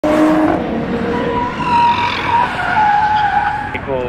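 Car tyres squealing in a long, wavering squeal as a sedan spins and drifts, with its engine running underneath.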